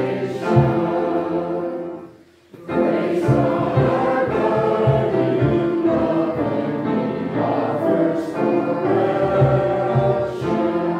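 Choir and congregation singing a hymn together, with a brief pause between lines about two seconds in.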